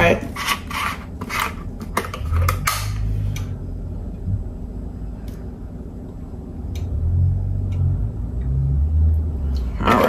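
A plastic bottle of cooking oil is uncapped with a run of sharp crackling clicks. Oil is then poured from it into a frying pan, a low, uneven sound through most of the rest.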